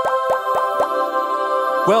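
Cartoon sound effect: a sustained, bright held chord with a quick run of sharp pops in the first second, the sound of angel figures popping into view.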